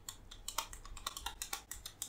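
Quick, irregular run of light clicks, about six a second, like buttons being pressed on a small handheld device.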